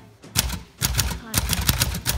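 A 1946 Smith Corona Silent manual typewriter being typed on: a quick run of keystrokes at an uneven pace, the typebars striking a new platen that softens the typing sound.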